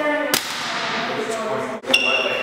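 A single sharp smack about a third of a second in, over faint voices in a large room. The sound drops out for a moment near the end.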